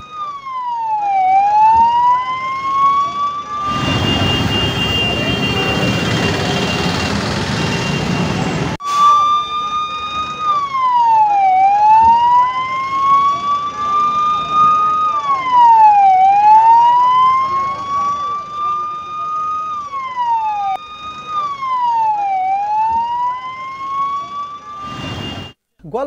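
A siren drops sharply in pitch and then climbs slowly back, again and again, about once every four to five seconds. From about four to nine seconds in, a loud rushing noise mostly drowns it out and then stops abruptly.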